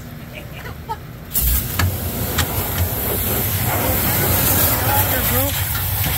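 Pressure-washer wand spraying water into a grain auger's hopper: a loud, steady hiss that starts suddenly about a second and a half in. The spray is thawing the ice packed around the auger flighting, which would tear off if the auger were engaged while frozen.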